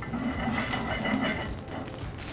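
Ribeye steak sizzling in butter in a smoking-hot cast-iron skillet. The hiss swells about half a second in and eases off near the end.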